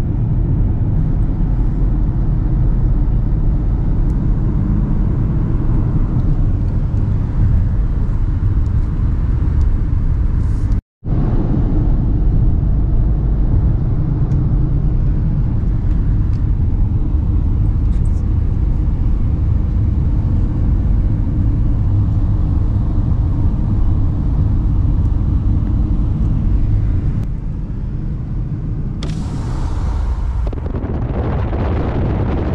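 Road and engine noise inside a Renault Captur cruising on a country road: a steady low rumble. The sound drops out completely for a split second about eleven seconds in, and a hiss of wind rises near the end.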